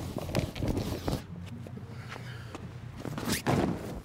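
Handling of heavy plastic crash-pad covers: scattered rustles and knocks, with a louder cluster of knocks a little after three seconds in.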